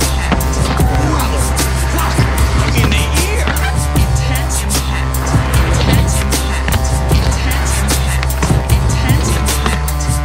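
Skateboard wheels rolling on concrete, with the board popping and landing on tricks, under music with a steady beat and bass.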